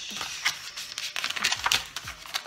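Paper pages of an instruction booklet being turned and rustled by hand: a soft papery hiss followed by a run of short crinkly clicks.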